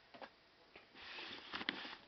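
Handling of small plastic Lego pieces: a couple of light clicks, then about a second of hiss with a few sharp clicks in it near the end.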